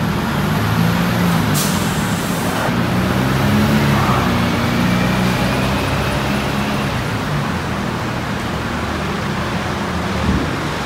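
Heavy vehicle engines running, their pitch rising and falling, over a steady noisy background. There is a sharp click about one and a half seconds in.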